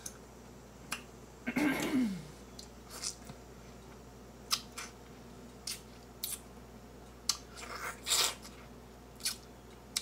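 Close-up wet mouth sounds of a person eating grapefruit: sharp smacks and clicks as the juicy pulp is chewed and sucked. A brief falling vocal 'mm' comes about one and a half seconds in, and a longer sucking slurp comes around eight seconds.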